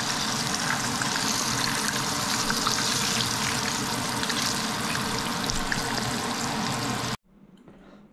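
Flour-coated smelt frying in hot vegetable oil in a pan: a steady sizzle with small crackles and pops. It cuts off suddenly about seven seconds in.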